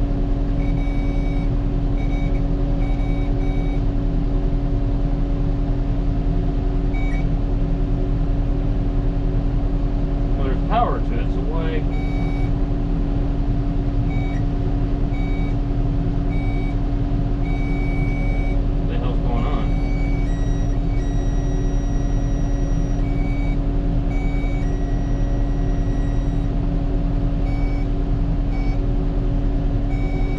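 New Holland T7040 tractor's diesel engine running steadily, heard from inside the cab, with short electronic beeps sounding on and off throughout. Twice, about eleven and about nineteen seconds in, a brief wavering sound rises over the engine.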